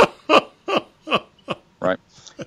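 A man laughing in a rhythmic run of about six short 'ha' pulses, two or three a second.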